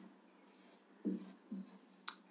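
Marker pen writing digits on a whiteboard: two short, quiet strokes, a little after a second in and again about half a second later.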